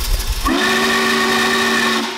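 Steam whistle of the Norfolk and Western 611 Class J locomotive: a low rumble, then about half a second in a long blast that slides up into a steady chord of several notes.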